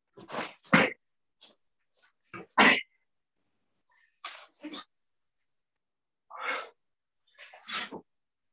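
Short, forceful exhalations and shouts (kiai) from karate students performing the Sanseru kata over a Zoom call. They come as about eight sharp bursts, the loudest near the start and about two and a half seconds in. Each cuts off abruptly into silence.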